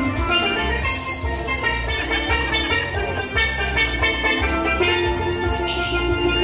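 Steel pan played live, a bright melody of ringing notes over a backing track with bass and drums from loudspeakers, in a steady beat.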